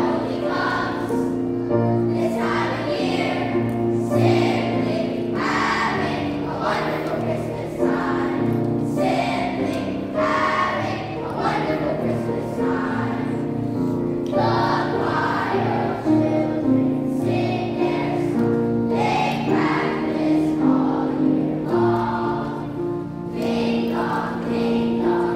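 Children's choir singing with upright piano accompaniment.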